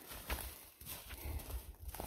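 Light knocks and rustling of a wooden stick and gloved hand poking into gravelly soil and dry pine needles, over a low rumble on the microphone.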